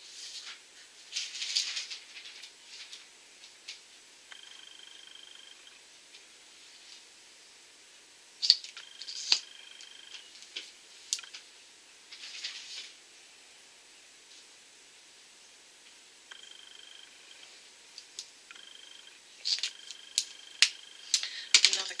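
Small clicks, taps and rustles from a mascara tube and wand being handled, with a few short soft hissing bursts. Two sharp clicks come about midway and a run of clicks near the end. A faint high steady tone comes and goes several times in the background.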